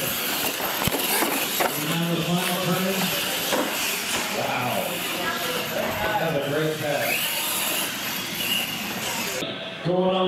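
Several people talking and calling out in a large hall over a steady high hiss. The hiss cuts out shortly before the end.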